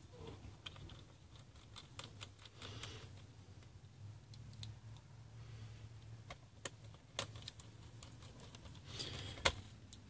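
Faint, scattered light clicks and ticks of a screwdriver and small screws as the hard drive caddy's screws are driven back into the laptop's base.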